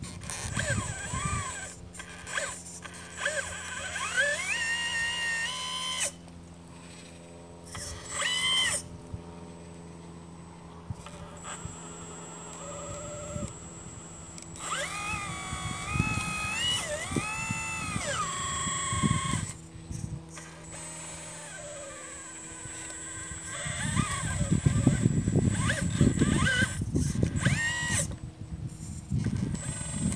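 Hydraulic drive of a 1/12-scale RC Liebherr 954 excavator working while it digs: an electric pump and valves whine, the pitch rising, holding and falling as the boom and bucket move, over a steady low hum.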